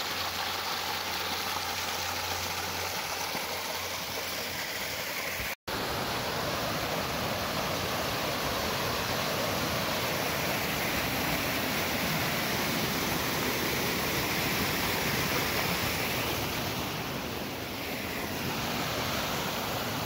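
Small mountain waterfall sliding down mossy rock, then a creek cascading over boulders: a steady rushing of water, with a split-second gap about five and a half seconds in.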